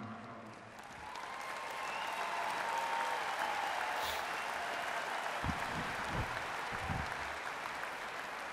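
Audience applauding, building up about a second in and then holding steady.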